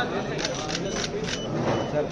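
Men's voices in a crowd with several camera shutter clicks in quick succession during the first second and a half, as a group poses for photographs.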